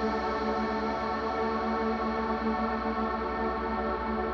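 Electric guitar through a Line 6 POD HD500's infinite (freeze) reverb, holding a dense, steady pad of sustained tones with a chorus-like shimmer and no fresh picked notes.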